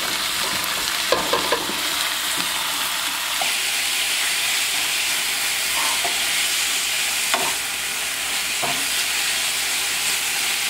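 Chunks of raw chicken sizzling as they fry in a skillet, a steady hiss throughout, with a wooden spatula stirring them and knocking lightly against the pan now and then.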